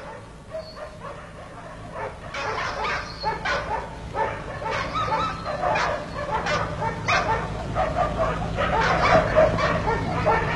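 A dog barking over and over in short calls, coming more often after the first couple of seconds, over a steady low hum.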